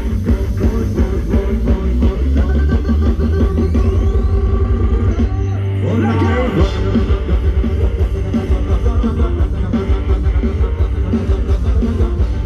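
Loud Thai ramwong dance-band music with a steady driving beat, electric guitar and heavy bass. The bass drops out briefly about six seconds in, under a short gliding pitch, then the beat comes back in.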